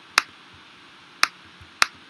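Three sharp mouse clicks: one just after the start, then two more about a second later, half a second apart.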